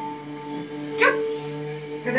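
Background music from a television: several steady held tones, with a brief sharp sound about a second in.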